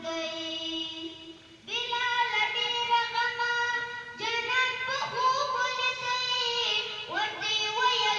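A child singing solo into a microphone, in long phrases with held, wavering notes; the singing drops away briefly about a second in and picks up again in fresh phrases.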